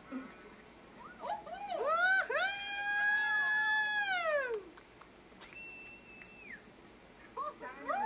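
An animal's drawn-out call: a few short rising cries, then one long held cry that falls away at the end. A little later comes a brief higher steady tone.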